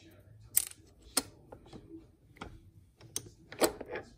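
Small metal parts of a Mitsubishi DCT470 dual-clutch transmission, a steel pin and the shift-fork linkage, clicking and tapping against each other as the pin is fitted by hand. There are about six sharp clicks, the loudest about half a second in and again near the end.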